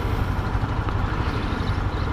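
Motorcycle engine running steadily at low revs, a low even hum with road noise over it.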